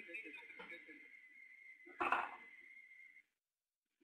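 Faint voices and line noise over a web-conference audio feed, with a thin steady high tone. A short louder sound comes about two seconds in, and the audio cuts out to silence shortly after.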